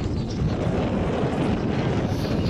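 Wind buffeting the camera's microphone: a steady, loud low rumble with no break.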